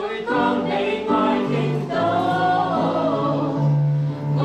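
Chinese worship song: singing voices over electronic keyboard accompaniment, with long sustained bass notes under the melody.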